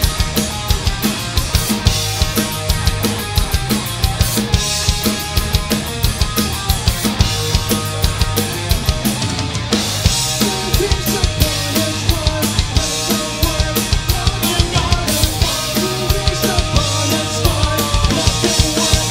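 Rock band playing live: drum kit with rapid bass drum and snare hits under electric guitar and bass guitar.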